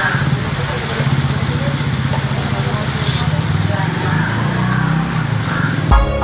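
Indistinct background voices over a steady low rumble, with a short hiss about three seconds in. A music sting starts right at the end.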